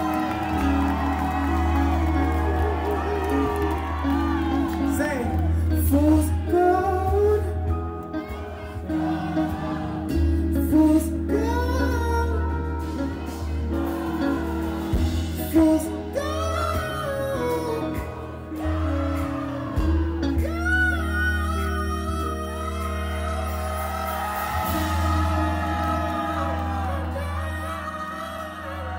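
A live funk band playing a song, with a strong bass line and drums under a man singing into a microphone through the PA.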